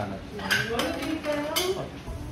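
Dishes and cutlery clinking in a restaurant: two sharp clinks, about half a second in and near the end, over murmured voices.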